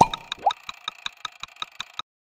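Clock-ticking sound effect: rapid, even ticks with a bright ring, about seven a second, with two short rising blips in the first half second.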